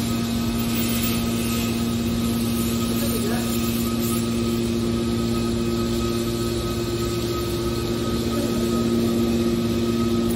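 Hydraulic metal baler running: its electric motor and hydraulic pump give a loud, steady hum with several constant tones.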